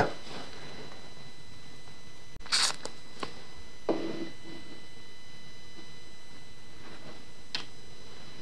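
Quiet room tone with a few brief handling noises: a short rustle about two and a half seconds in, a softer knock about four seconds in, and a small click near the end.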